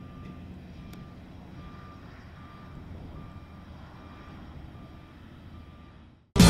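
Faint low rumble of an Airbus A350 jet airliner in flight, with a thin electronic beep repeating evenly, about five beeps every four seconds, in the pattern of a vehicle's reversing alarm.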